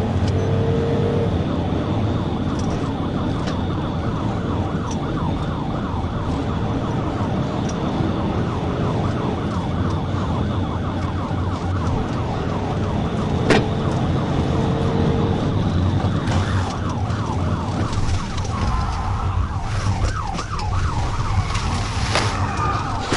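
Police patrol car siren sounding in a fast, rapidly rising-and-falling yelp over the cruiser's engine and road noise at high speed. Near the end the sweeps slow down. One sharp click comes about halfway through.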